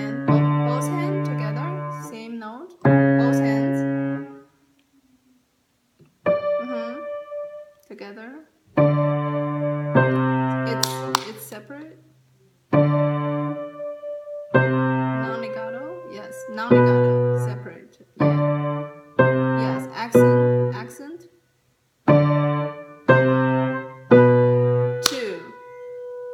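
Piano played in slow, heavy chords, struck one after another, each with a sharp attack that rings and dies away, with strong low notes in the left hand. A short pause comes about five seconds in, after which the chords come a little faster.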